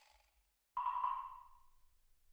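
A single electronic ping sound effect that starts suddenly about three-quarters of a second in and fades out over about a second.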